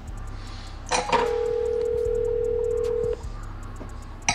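Telephone ringback tone of an outgoing call waiting to be answered: a click, then one steady ring of about two seconds that stops cleanly.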